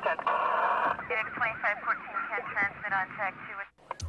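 Police two-way radio traffic: a thin, tinny voice over the radio, with a burst of static just after the start, cutting off shortly before the end.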